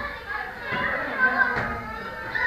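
Children's voices and chatter echoing in a large hall, with a couple of sharp slaps of kicks landing on hand-held kick pads, the clearest near the end.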